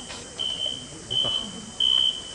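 A swimming referee's whistle giving a series of short, high, steady blasts, each about half a second long, with the last one the loudest. This is the pre-race signal that calls the swimmers to get ready behind the starting blocks.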